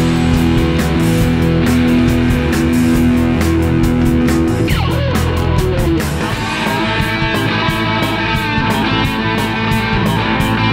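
Rock band playing with electric guitars and drums: held low guitar chords over a steady drum beat. About five seconds in, the chords stop with a falling slide, and a lighter guitar riff carries on over the beat.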